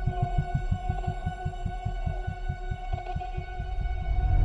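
Dark film-score music: a rapid, even low pulse like a heartbeat, roughly six pulses a second, under a sustained high drone.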